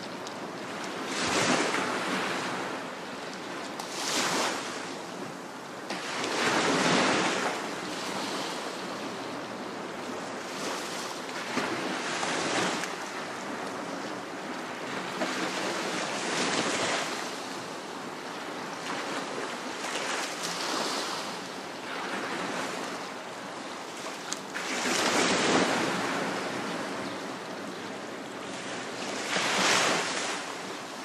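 Waves washing onto a reef-fringed beach. Each swell rises into a hiss and dies back, one every three to five seconds, over a steady wash of surf.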